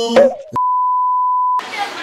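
A single steady electronic beep at one pitch, about a second long, of the kind cut in during editing as a censor bleep. It starts and stops abruptly, just after a sung children's-style shopping song ends, and voices and shop noise return right after it.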